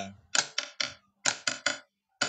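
The syncopation rhythm 'ka-ta-ka' sounded out as short, sharp strokes in groups of three, one group to each beat, twice.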